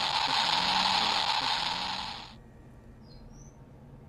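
Geiger counter crackling like static, its Geiger–Müller tube struck about 240 times a second at a dose rate near 120 µSv/h. The hiss cuts off suddenly a little past halfway, leaving a much quieter background.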